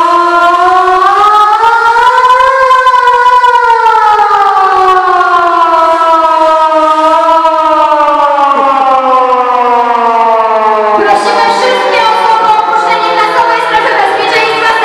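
A siren wailing: its pitch rises over the first two or three seconds, then falls slowly for most of the rest. About eleven seconds in, voices come in over it.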